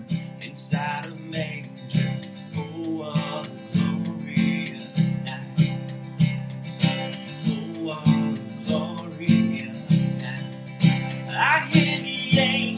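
Acoustic guitar strummed in a steady rhythm, with a voice singing quietly at times, most clearly near the end.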